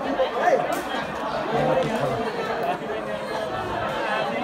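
A group of people talking over one another, several voices at once.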